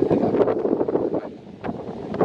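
Wind buffeting the microphone: a rough rushing noise that eases briefly about one and a half seconds in.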